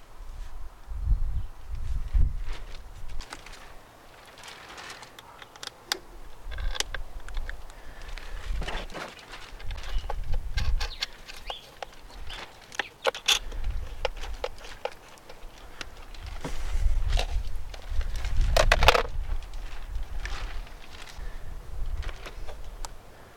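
Small wrench clicking and scraping on the terminal nuts and copper cable lugs of two 6-volt batteries as they are wired in series. The result is a run of irregular metallic clicks and clatters, with intermittent low rumbles.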